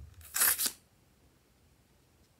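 Small scissors snipping into a rubber squishy balloon: one short, crisp cut about half a second in.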